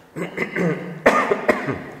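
A loud cough about a second in, with a second shorter cough half a second later, amid a voice making short speech-like sounds.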